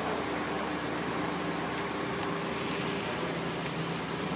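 Steady room noise: an even hiss with a faint low hum and no distinct events.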